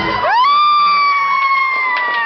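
A man's voice, amplified through a karaoke microphone, swoops up and holds a long high note for about two seconds. The backing track cuts out just as the note begins.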